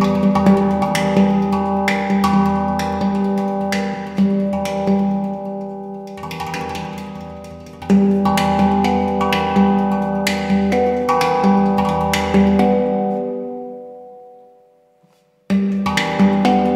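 Yishama pantam, a steel handpan, played with the fingers: a run of struck, ringing notes over a recurring deep note. Near the end the notes die away to a brief silence, and the playing starts again just before the end.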